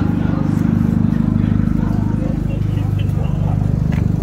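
A car engine idling steadily close by, a low, even note with a fast regular pulse.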